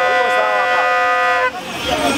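A vehicle horn held in one long steady blast that cuts off about one and a half seconds in, over a crowd's shouting and talking.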